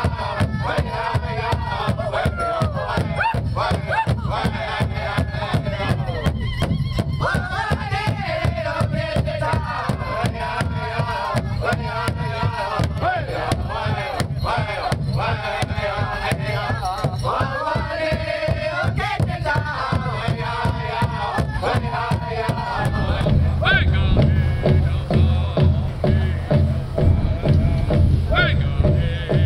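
Powwow drum group singing together over a steady, even beat on a shared drum. About 23 seconds in, the singing stops and a lower, louder pulsing sound takes over.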